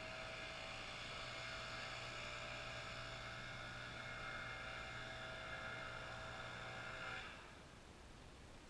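A faint, steady mechanical hum and whir, like a distant motor running, holding several fixed tones from a low hum up to a high whine; it cuts off suddenly about seven seconds in.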